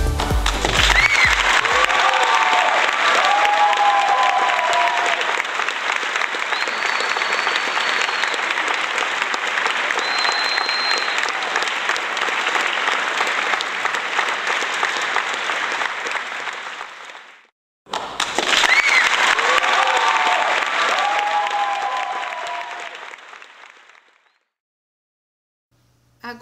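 Recorded applause and cheering with whoops and whistles. It fades out, the same stretch starts again a moment later, and it fades out again a couple of seconds before the end.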